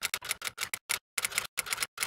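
Typewriter sound effect: rapid, irregular mechanical key clacks, about five a second, as on-screen text types itself out.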